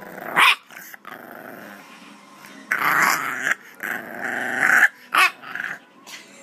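English bulldog puppy vocalizing: a sharp short yip about half a second in, two long drawn-out growls in the middle, and another short bark near the end.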